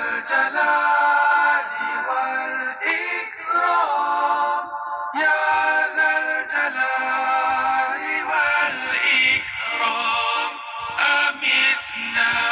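Islamic zikir chant sung by a melodic voice in long phrases that glide in pitch, with short breaks between phrases.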